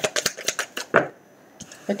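Tarot cards being shuffled by hand: a quick run of crisp card clicks through the first second, then a brief lull.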